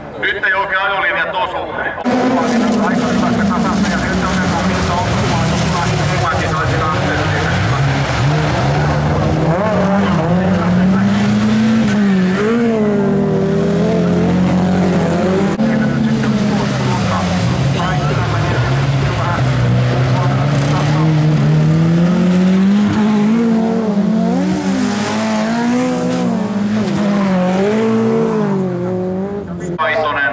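Several Volkswagen Beetle folk-race cars with air-cooled flat-four engines revving hard as the pack races on a gravel track, the engine notes rising and falling with throttle and gear changes. The loud engine noise comes in about two seconds in and runs on without a break.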